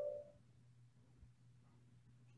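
Near silence: faint room tone with a steady low hum, after the last ringing of a chime-like tone fades out at the very start.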